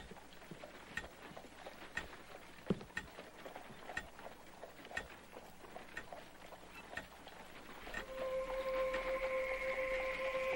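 A clock ticking steadily, about once a second. Near the end a sustained music tone swells in underneath.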